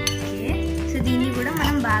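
A fork clinking and scraping against a glass bowl as a chopped sprouts salad is stirred, over background music.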